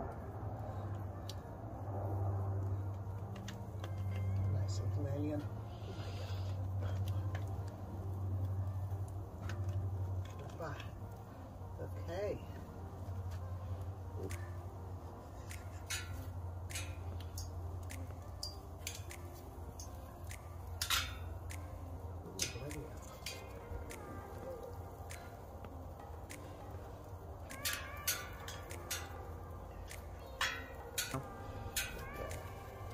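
Wood fire crackling in a small portable fire pit under sausages laid on its grill. Sharp pops come irregularly from about halfway through, with a cluster near the end, over a steady low rumble.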